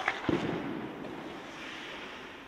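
Ice hockey shot on goal in an indoor rink: a sharp crack of stick on puck, then about a third of a second later a louder, deeper bang as the puck strikes, ringing in the arena. A scraping hiss of skates on the ice follows.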